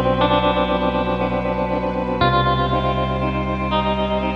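Instrumental post-rock music: guitar washed in chorus and echo effects playing sustained chords over a steady bass, the chord changing about two seconds in.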